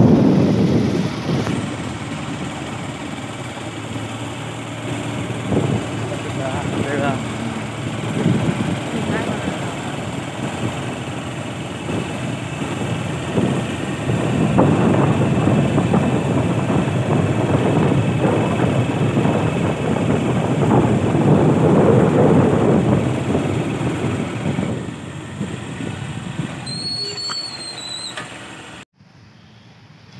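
Wind rushing over the microphone with road and engine noise from a moving motorbike, rising and falling in strength. It cuts off suddenly near the end, giving way to a much quieter outdoor sound.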